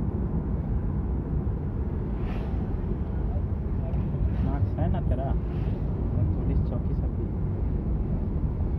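Steady low road rumble of a vehicle driving along a paved road. Brief voices come through about four to five seconds in.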